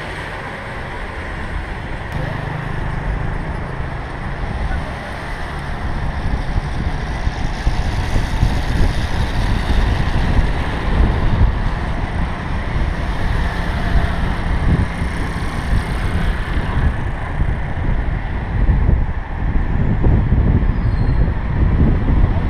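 Street traffic heard from a moving bicycle: cars and motor scooters running close by, with wind rumbling on the camera's microphone. It grows louder about six seconds in.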